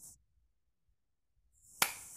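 A brief hiss that cuts off, then near silence, then a steady hiss that fades in with one sharp click near the end: the audio of a video call cutting in.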